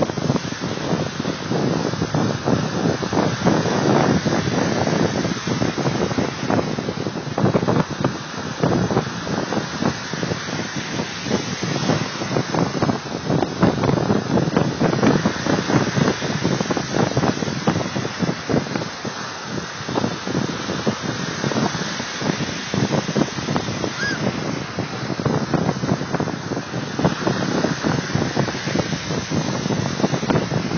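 Wind buffeting a phone's microphone in uneven gusts over a steady rush of waves.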